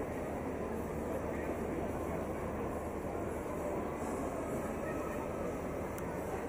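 Indoor crowd hubbub: many people talking indistinctly over a steady low background hum.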